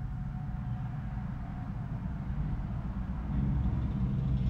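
Low, steady background rumble with a faint hum, growing louder about three seconds in.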